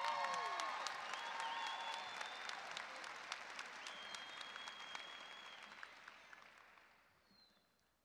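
Large audience clapping and cheering, the applause dying away gradually over the last few seconds.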